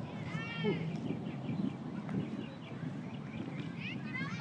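Distant children shouting and calling out on a playing field: a few short, high-pitched calls, one near the start, over a steady low outdoor rumble.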